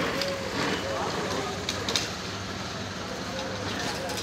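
Street ambience: indistinct voices of passers-by over motorcycle and traffic noise, with scattered clicks and knocks.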